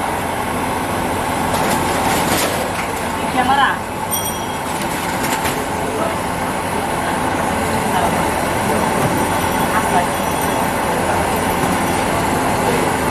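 Busy street-food stall sound: chicken balls deep-frying in a large pan of oil under a steady rumble, with background voices throughout. A brief metallic clink about four seconds in.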